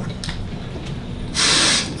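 Quiet room tone, then about a second and a half in a short, sharp hiss of breath drawn in close to a handheld microphone.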